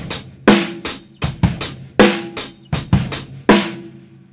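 Drum kit playing a simple beat: bass drum and snare under a steady hi-hat played evenly, with no accents. The beat stops just before the end.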